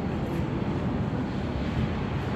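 Steady rumbling background noise of an underground metro station platform, with no distinct events.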